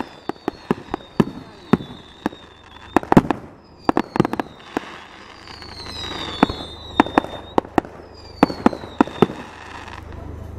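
Fireworks going off: an irregular run of sharp bangs and pops, with several high whistles that fall slightly in pitch as shells rise.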